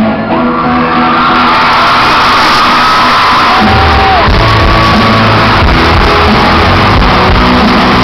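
Live pop-rock band playing loud through a concert sound system, heard from the audience. The full band, with heavy drums and bass, comes in about three and a half seconds in.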